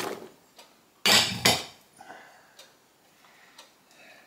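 Chopped root vegetables tipped from a bowl into a slow cooker pot, the pieces landing with a knock at the start and a louder one about a second in, then a few light taps.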